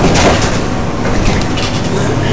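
Interior noise of a moving bus: a steady low engine hum under a loud rattling of the bus body over a bumpy road surface, with a louder clatter right at the start.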